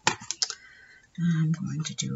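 A quick run of sharp clicks from a mini hot glue gun being handled over a cutting mat, then a woman's voice for the second half.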